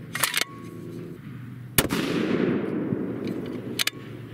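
A custom 7mm PRC bolt-action rifle with a three-port muzzle brake fires one shot about two seconds in, its report followed by a long echo dying away. Near the end come a couple of sharp clicks as the bolt is worked, lifting without sticking, so there is no sign of excess pressure from this load.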